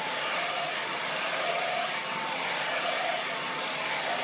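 Handheld blow dryer running steadily: a constant rush of air with a faint motor whine, blowing out natural curly hair straight.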